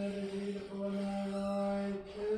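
Orthodox liturgical chant: a voice sustaining one steady note, with a slight change of pitch near the middle.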